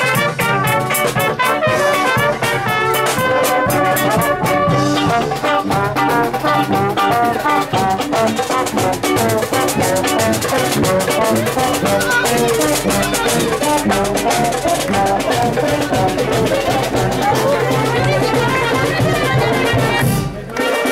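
Brass street band playing live and loud: trumpets, trombone and saxophone over a sousaphone bass line and a marching drum, the music running without a break.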